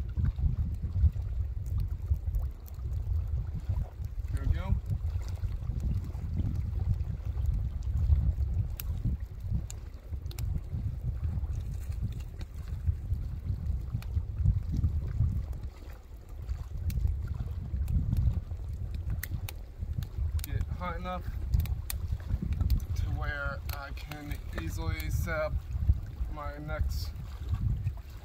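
Wind buffeting the microphone in a steady, gusty low rumble, with occasional light clicks and knocks as split wood is set on a small campfire. A voice is heard briefly past the middle.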